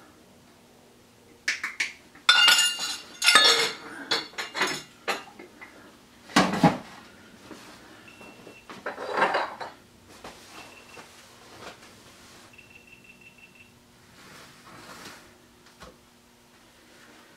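Kitchen utensils and a metal baking pan clattering on a stone countertop as they are handled. A dense run of clinks and knocks comes over the first few seconds, then two sharper knocks and lighter handling noises.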